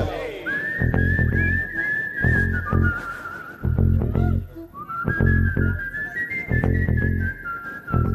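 A person whistling a melody of held, slightly wavering notes in two phrases, with a short break in the middle, over a looped electronic beat with a deep bass pulse.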